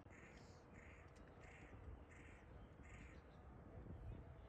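A crow cawing faintly, five short calls evenly spaced about two-thirds of a second apart.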